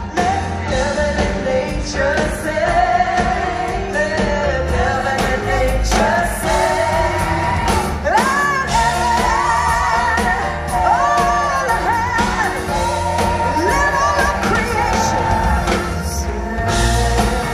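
A live band playing with a woman singing the lead melody, with piano, drums, upright bass and guitar, heard from the audience in a large hall.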